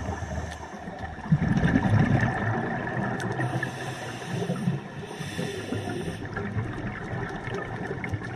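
Underwater recording of a scuba diver breathing through a regulator: a rumbling burst of exhaled bubbles from about a second in, followed by two hissing inhalations through the regulator.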